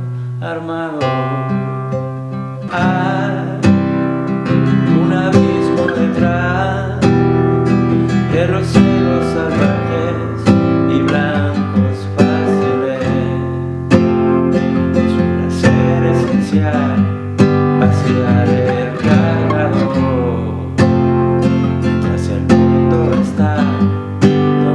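Nylon-string classical guitar strummed as a chord accompaniment in C major, with continuous strokes and chord changes throughout.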